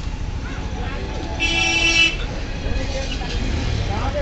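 A vehicle horn honks once, for under a second, about a second and a half in, over the steady rumble of road traffic.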